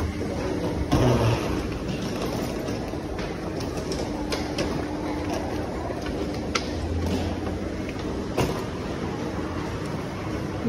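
Escalator running with a steady hum, then footsteps on a hard corridor floor, with scattered sharp clicks and knocks; the loudest knocks come about a second in and near the end.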